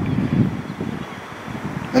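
Wind buffeting the microphone: an uneven low rumble, strongest at the start and easing off.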